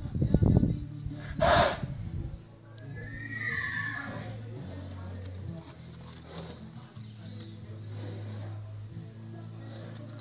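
A horse neighing: a loud, rough burst about a second and a half in, then a falling whinny around three to four seconds in. Loud low rumbling fills the first second.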